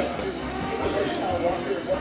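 Indistinct background voices in a pizzeria, with faint music underneath.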